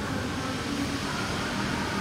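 Steady background hum and hiss, with no distinct event standing out.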